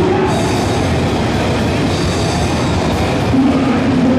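Heavy metal band playing live: distorted electric guitars and drums in a loud, dense wall of sound.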